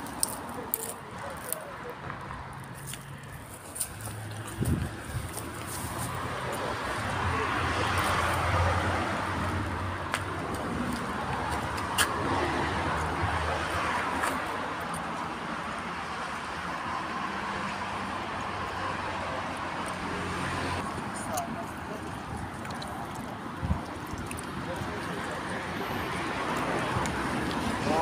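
Indistinct voices over passing road traffic that swells and fades a few times, with scattered clicks and bumps.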